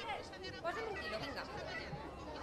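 Several sellers and buyers talking over one another in Valencian, a recreated street-market chatter of overlapping voices.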